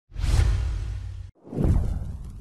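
Two whoosh sound effects with a deep low end, for an animated logo intro. The first starts just after the beginning and cuts off abruptly after about a second. The second swells about a second and a half in and then fades slowly.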